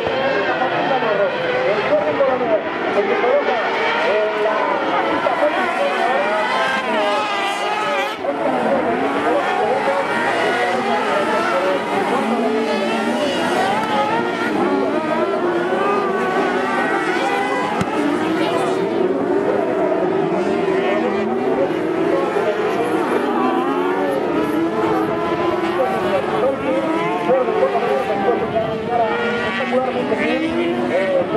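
Several car-cross buggies racing on a dirt track, their high-revving motorcycle engines rising and falling in pitch together as they accelerate through the corners.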